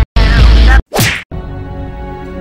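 A rap track with a heavy beat cuts off, and about a second in a single sharp whoosh-and-hit sound effect sweeps from high to low, like a movie punch. Softer, slow music then starts.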